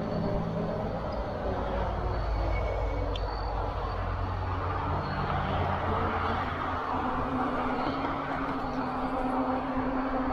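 A Lectric XP 2.0 e-bike being ridden: steady wind noise on the handlebar-mounted microphone and the tyres rumbling on the path, with a low hum coming in about halfway through.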